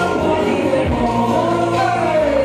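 Live stage music, loud and continuous: a backing track with a steady bass line played from a DJ's decks, with several voices singing over it.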